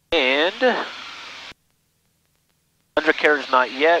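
Speech over an aircraft headset intercom feed. A short burst of voice is cut off abruptly at about a second and a half, and after a silent gap a man starts speaking near the end; the engine is hardly heard behind it.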